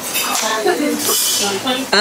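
Dishes and cutlery clinking at a café counter, with a brief hiss about a second in and voices in the background.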